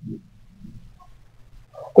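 A pause in a man's speech: faint low room hum, with a short voiced sound from the speaker near the end as he starts to speak again.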